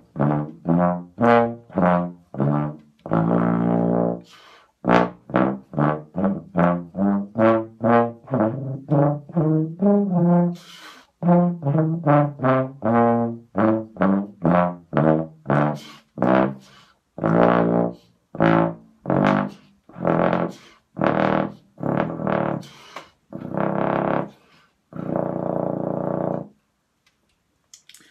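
BBb/FF contrabass trombone played with its standard stock mouthpiece at a comfortable volume: a long run of short, detached notes moving up and down in pitch, with a few longer held notes, the last one a couple of seconds before the end.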